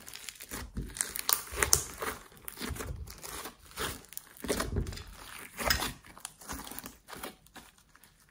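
Glossy slime mixed with clay and glitter being squished, stretched and folded by hand, giving irregular sticky crackles and pops that get quieter near the end.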